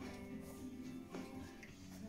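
Quiet background music with held notes, over faint smacking of Großspitz puppies suckling from their mother.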